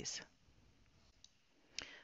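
Near silence: quiet room tone between spoken phrases, with a faint tick about a second in and one short, sharp click near the end.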